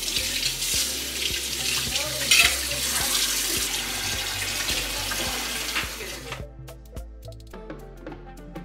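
Kitchen tap running into the sink while dishes are rinsed and scrubbed by hand; the water is shut off about six and a half seconds in. Background music plays underneath.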